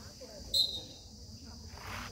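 Steady high-pitched chorus of insects from the surrounding trees. A short, sharp high sound cuts in about half a second in, and a brief rush of noise comes near the end.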